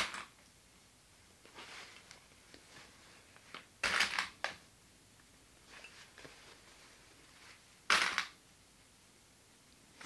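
Cotton fabric rustling as it is handled and clipped together with plastic sewing clips, mostly quiet with two louder brief rustles about four and eight seconds in.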